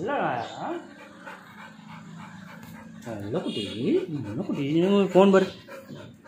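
A black Labrador whimpering while a man coos to it in a rising and falling sing-song voice, without clear words.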